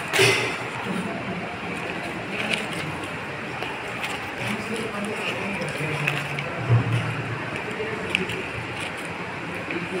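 Paper pages of a handwritten file being turned one after another, with repeated rustles and flaps of paper, under a steady background voice.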